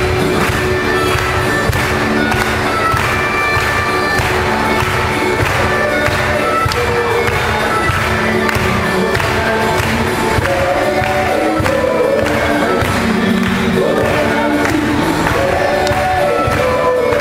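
Group of voices singing a devotional hymn with instrumental accompaniment and a steady beat.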